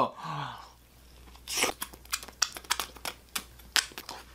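A person biting into and chewing a hot Hot Pocket close to the microphone: an irregular run of short crunching and smacking noises.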